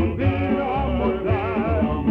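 Tamburica ensemble (prim, brač, čelo, bugarija and bass) playing a Yugoslav folk song, with male voices singing a held, wavering melody over the plucked strings and bass.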